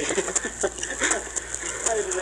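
Home-recorded 1940s acetate 78 rpm disc playing back: steady surface hiss with scattered crackles and a low hum, under a few brief faint voices on the recording.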